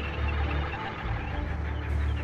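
Film sound design: a deep rumbling drone that swells and fades about three times, under faint scattered chirps.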